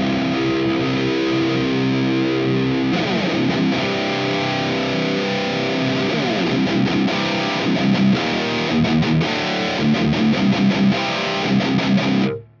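High-gain distorted electric guitar in drop C, played through an amp capture and the MIKKO2 simulation of a Mega 4x12 cab with V30 speakers and a ribbon 160 mic. A chord rings for about three seconds, then riffing follows, with choppy palm-muted chugs near the end, as the virtual mic is moved across the speaker.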